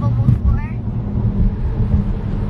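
Steady low road and engine rumble inside the cabin of a car driving in traffic.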